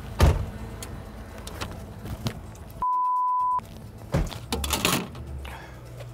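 A vehicle door shuts hard just after the start, followed by a few light knocks and clicks. About three seconds in, a steady 1 kHz broadcast censor bleep replaces the audio for under a second, covering a word.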